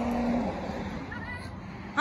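A person's voice holding a long hummed "mmm" that stops about half a second in, then a faint background hiss.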